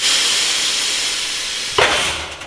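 Belovac vacuum former's forming table driven up at half speed: a loud, steady rush of hissing air, ending with a sharp knock near the end as the table stops at the top, after which the hiss dies away.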